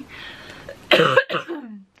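A woman coughing: two sharp coughs about a second in, trailing off into a falling throaty sound.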